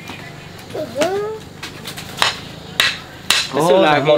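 A long wooden branch knocking against rocks: about four sharp, irregularly spaced knocks, with a short rising-and-falling voice-like call about a second in.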